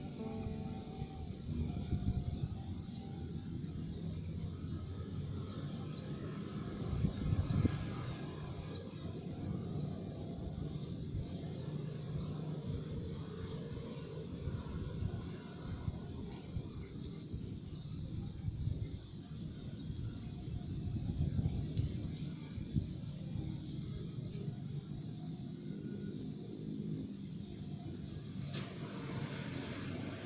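Steady low outdoor rumble that swells a little twice, without a clear distinct event.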